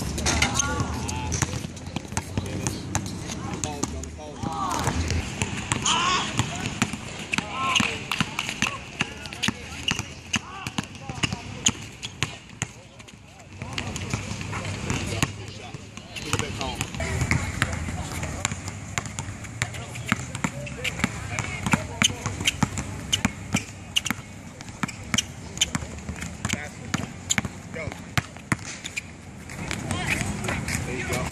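A basketball bouncing again and again on an outdoor asphalt court as a player dribbles, with people's voices in the background.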